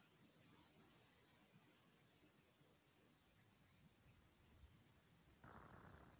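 Near silence: only a faint, even hiss.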